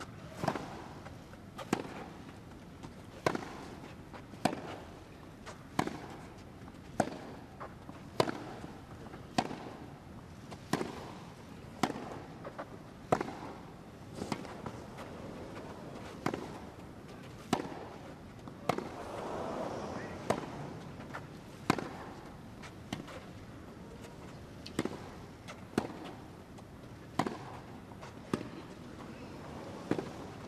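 Tennis ball struck back and forth by two racquets in a long baseline rally on a grass court: a sharp hit about every second and a bit, with fainter bounces between. A brief swell of crowd noise rises around two-thirds of the way through.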